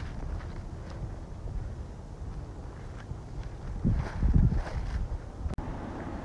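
Wind rumbling on a camcorder microphone, with footsteps crunching through dry leaf litter. The rumble and crunching swell louder about four seconds in, and the sound cuts out for an instant near the end.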